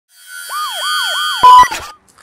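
Intro sting built on a siren sound effect: a fast yelping siren sweeps up and down about three times a second over steady held music tones. It ends in a loud hit about one and a half seconds in.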